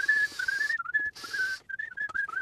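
A man whistling a wandering tune through his lips in a string of short, breathy notes, with faint clicks from a screwdriver working screws out of a plastic housing.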